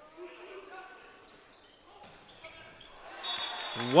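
A volleyball rally heard faintly in a gym hall: ball contacts and faint voices around the court. Near the end a commentator's loud, excited call begins as the point is won.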